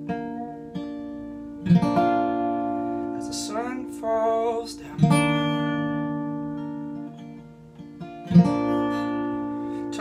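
A steel-string dreadnought acoustic guitar is strummed. A chord is struck about every three and a half seconds and left to ring out slowly between strums.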